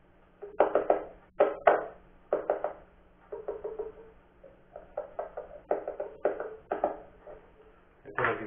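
Under-saddle piezo pickup tapped and handled by fingers, heard through an amplifier: about a dozen sharp knocks, some in quick pairs and threes, each with a short ringing tone.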